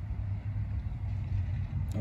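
A low, steady outdoor rumble with no distinct event.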